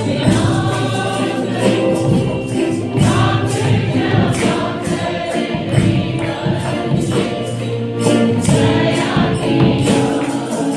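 Church choir of women and men singing a praise-and-worship song through microphones, over a steady percussion beat.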